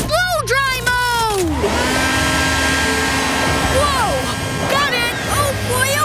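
Cartoon soundtrack: short vocal exclamations from a character, then a steady mechanical whir from the pup's extending gadget arm, under background music.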